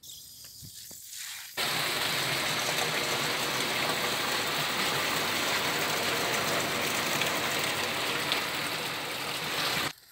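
Water gushing steadily from a pipe into a plastic drum. It starts suddenly near two seconds in and cuts off just before the end.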